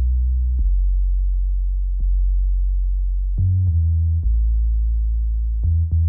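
Deep, sine-like synth bass playing back from an FL Studio beat: a slow line of long held low notes that changes pitch a few times. There are small clicks where the notes change.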